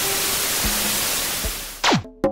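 TV-static hiss sound effect over faint music with a low beat, ending in a quick downward-sweeping whine near the end.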